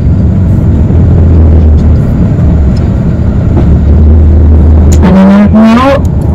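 Bus engine and road noise heard from inside the moving bus: a steady low rumble, strongest from about one to five seconds in.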